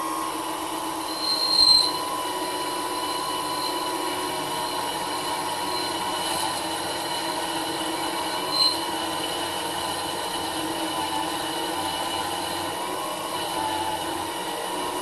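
Belt-driven drilling spindle powered by a 775 DC motor on 19 volts, running with a steady whine while a 3 mm high-speed steel drill bores into steel. Short high squeals come about two seconds in and again about nine seconds in. The motor handles the cut easily.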